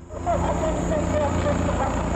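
Helicopter flying overhead, its rotor drone loud under a recorded woman's voice speaking Portuguese and blaring from a loudspeaker on board: a mother's appeal to her fugitive son to surrender.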